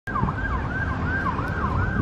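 An emergency vehicle's siren in a fast yelp, its pitch rising and falling about two and a half times a second, over a low rumble underneath.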